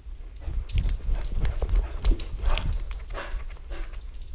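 A dog rushing about with a camera strapped to its back. Its movement makes heavy rumbling on the camera, its paws tap and click quickly on the floor, and it pants. The burst starts about half a second in and settles just before the end.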